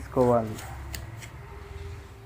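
A brief spoken syllable about a quarter second in, then a steel spoon stirring dry semolina in a steel bowl, with a few light clicks of spoon against steel over a low steady hum.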